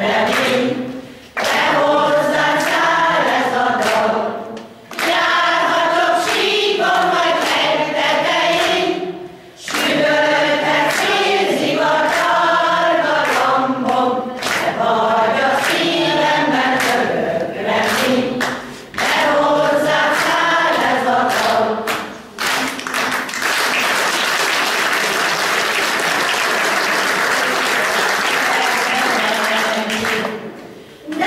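Amateur folk-song choir singing a Hungarian song in phrases with short breaks between them. The song ends about 23 seconds in and the audience applauds.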